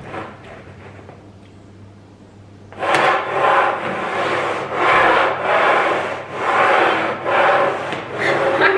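Upturned bowls slid back and forth across a wooden tabletop, a rhythmic rubbing scrape of about two strokes a second that starts about three seconds in.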